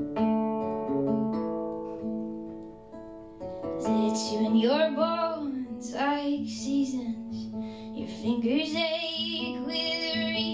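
Acoustic guitar playing sustained chords, with a woman's solo singing voice coming in about four seconds in over the guitar: a live folk-style song.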